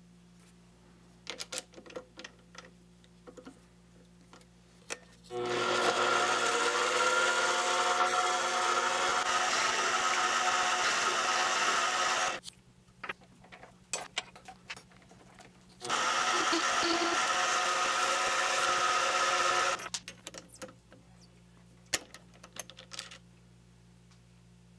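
Mini lathe motor running in two spells, about seven and then four seconds, its pitch rising as it spins up at the start of the first, while a carbide tool faces the end of an aluminum part. Light clicks of small metal parts being handled come before, between and after the runs.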